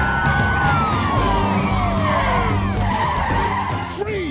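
Police cars skidding to a stop, tyres squealing in several long, falling squeals over the rumble of their engines.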